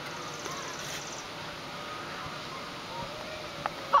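Steady outdoor background noise with faint voices in the distance, and a single click near the end.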